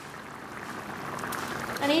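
Katsu curry sauce simmering in a pan on the hob, a bubbling hiss that grows gradually louder. A man's voice starts right at the end.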